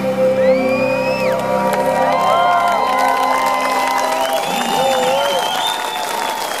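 A synthpop band's live song ends on a held note that dies away about two seconds in, and the crowd cheers and whoops.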